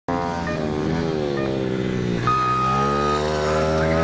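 Yamaha FZ1 Fazer's inline-four engine revving up and down as the motorcycle accelerates and slows through a gymkhana cone course. A steady high beep sounds for about a second midway.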